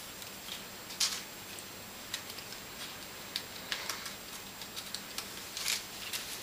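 Light rustles and small clicks of paper sliceform pieces being slotted and woven together by hand. The sharpest rustle comes about a second in and another near the end, over a faint steady hiss.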